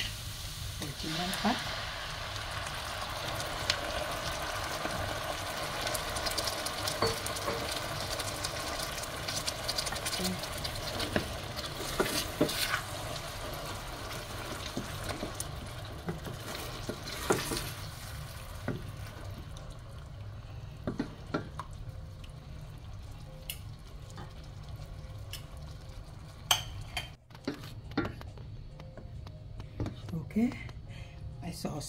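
Chopped onion, pepper and garlic sizzling in oil in a stainless steel pan. The sizzle dies away about two-thirds of the way through as tomato sauce goes in. A wooden spoon stirs and clicks against the pan.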